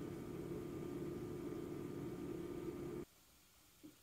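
Faint steady background hum and hiss that cuts off abruptly about three seconds in, leaving near silence with one brief faint blip just before the end.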